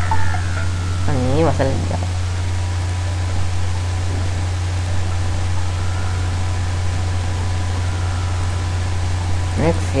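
Steady low hum with an even hiss, typical of a microphone's background noise. A short voiced murmur comes about a second in, and speech resumes near the end.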